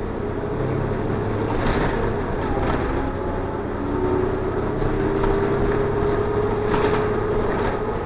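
Inside a moving city transit bus: engine and drivetrain running with road noise and rattles, with a faint whine that rises slightly in pitch in the second half.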